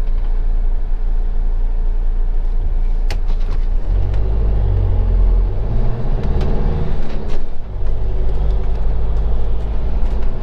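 Motorhome engine heard from inside the cab, idling steadily, then rising in pitch as the van pulls away about four seconds in, with a brief dip near eight seconds before it settles into a steady run.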